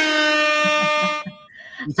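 A loud held pitched tone with many overtones, level in pitch, that stops about a second and a quarter in.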